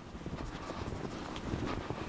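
Faint footsteps of a person walking through fresh snow, irregular steps with light scuffing.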